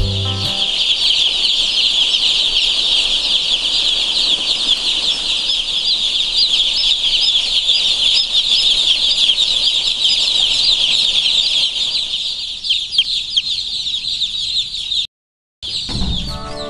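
A large flock of young chicks peeping: a dense, unbroken chorus of high-pitched chirps. It cuts out for about half a second near the end, then resumes.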